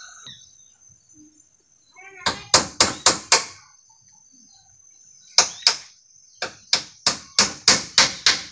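Hammer blows on bamboo poles: a quick run of five sharp strikes about two seconds in, two more just past the middle, then a steady run of strikes near the end, about four a second.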